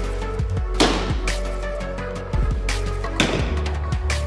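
Background music with a steady low beat and held notes, with two louder crash-like accents, about a second in and again past three seconds.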